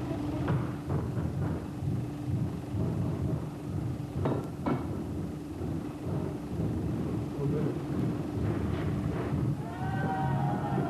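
Low, uneven rumbling noise with indistinct voices under it and a steady low hum throughout; two sharp knocks come a little past four seconds in.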